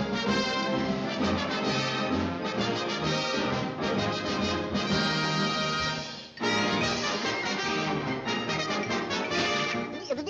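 Brass-led orchestral cartoon score, 1940s Warner Bros. style, with trombones and trumpets. The music breaks off briefly about six seconds in, then a new brass passage starts.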